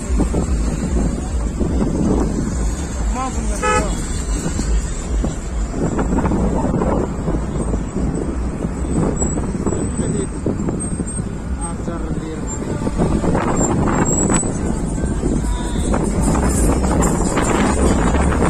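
Steady low rumble of a moving vehicle with wind on the microphone, among a convoy of cars, with people's voices and car horns tooting.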